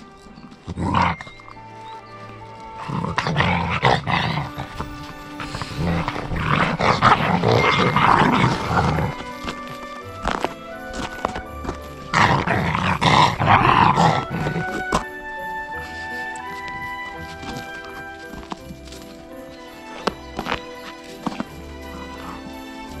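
Background music with a steady tune, over which Central Asian Shepherd (Alabai) puppies yap and growl at each other in play: a short burst about a second in, then longer bouts over the next dozen or so seconds, after which only the music carries on.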